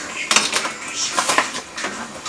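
Kitchen handling sounds at the counter: a few sharp clicks and rattles, the loudest about a third of a second in, as a cardboard box of dry macaroni is handled and opened.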